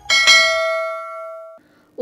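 A bell chime sound effect, struck once and ringing out, fading away over about a second and a half. It marks the click on the notification bell in a subscribe animation.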